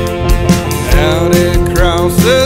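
A full band plays the song's lead-in, with a drum kit keeping a steady beat under held guitar and keyboard-like tones.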